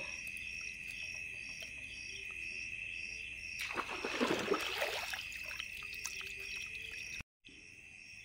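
Steady high trill of night crickets and insects, with a second call pulsing above it. In the middle, a short wet sloshing and scraping as a hand scrabbles through muddy water for fish.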